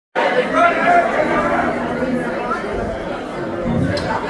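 Audience chatter: many voices talking at once in a crowded hall, with no music playing.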